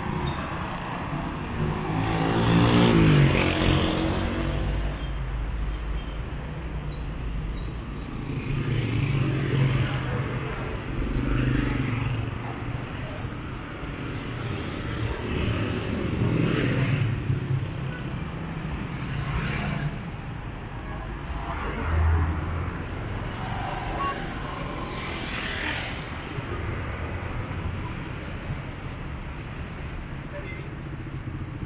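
City street traffic: cars and motorcycles driving past one after another over a steady engine rumble. About three seconds in, a vehicle accelerates past with a rising engine note, and a short low thud comes a little after the middle.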